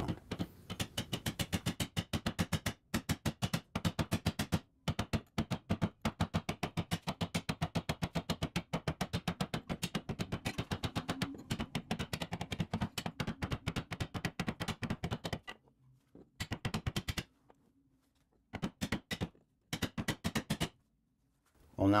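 Wooden caulking mallet striking a caulking iron in a quick, steady rhythm, driving cotton into the plank seams of a wooden boat hull. The taps come about five a second in long runs, with brief pauses and a longer break later on, and stop shortly before the end.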